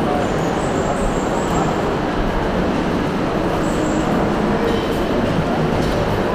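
Indoor shopping-mall ambience: a steady din of distant crowd chatter over a constant rumbling hum, echoing in a large enclosed hall.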